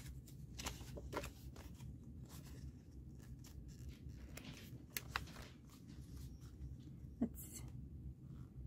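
Faint paper handling: sticker cards and banknotes being shuffled and slid into a binder's plastic pockets, with a few sharp clicks and a short rustle near the end, over a low steady hum.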